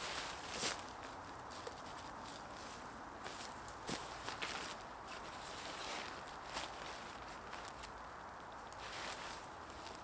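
Faint footsteps on dry leaf litter, with a few light ticks and the rustle of nylon tent fabric being pulled out flat.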